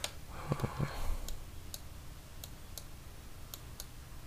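Computer mouse clicking: about six single, separate clicks spread over a few seconds.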